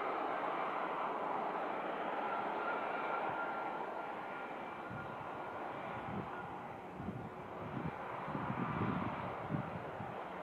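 Embraer E190's twin GE CF34-10E turbofans running as the jet taxis: a steady rushing sound with a faint whine, slowly easing. In the second half, a few irregular low rumbling puffs.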